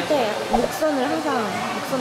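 Hair dryer running steadily in the salon, with a voice rising and falling over it.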